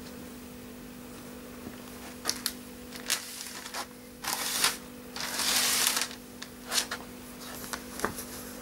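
Ugg Classic Mini sheepskin boots stepping and scuffing on a wooden floor: a few short taps and scrapes, then two longer scrapes in the middle, the second and longer one the loudest. A steady hum runs underneath.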